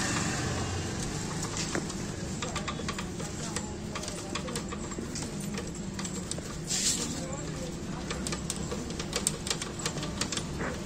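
Metal clicking as a T-handle socket wrench turns the rear brake rod's adjusting nut off a motorcycle's rear brake arm. The clicks quicken in the second half, with one brief rush of noise about two-thirds of the way through.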